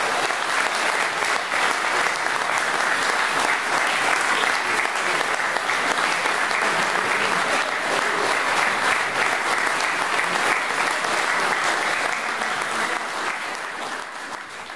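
Audience applauding, steady throughout and fading near the end.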